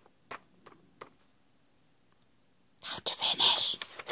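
Pages of a paper notebook turned by hand: a few faint ticks in the first second, then a loud rustle and flutter of paper near the end.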